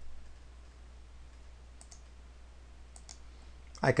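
Faint clicking from the computer being operated: two quick pairs of clicks, one a little under two seconds in and one about three seconds in, over a low steady hum.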